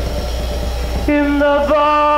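Live rock music from a 1970 concert recording. After a quieter, unsettled first second, a loud, sustained high note comes in and holds steady, with a brief dip in pitch. A steady low hum runs underneath.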